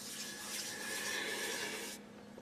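Hands rubbing together: a steady dry rustle.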